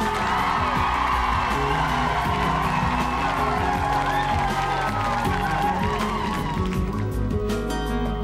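Studio audience cheering over the opening of a slow, chill-out pop song. The cheering fades out about seven seconds in, and an acoustic guitar's picked intro comes through.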